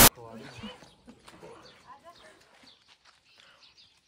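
Faint voices of people talking, in snatches, over quiet outdoor background.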